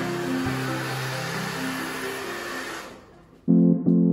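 Hand-held hair dryer with a comb attachment blowing steadily while it dries natural hair. It fades out about three seconds in.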